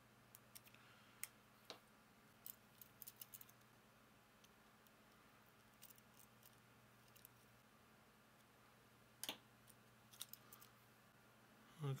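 Faint, scattered clicks and light taps of small 3D-printed plastic parts and a metal shaft being handled and fitted together, a slightly louder click about nine seconds in.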